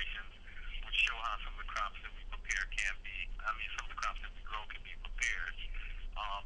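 A person talking without pause, the voice thin and narrow in tone, as if heard over a telephone line.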